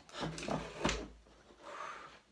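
A few short knocks and rubbing as a strand of yarn caught under a board is tugged free, the board shifting with it, then a brief soft murmur near the end.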